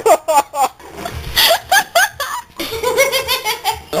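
Laughter: repeated short bursts of hearty laughing.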